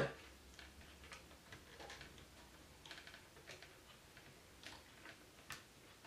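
Faint, irregular clicks from the plastic joints and pegs of a Jinbao oversized Nero Rex Talon transforming robot toy as its parts are moved by hand. One of the sharpest clicks comes near the end.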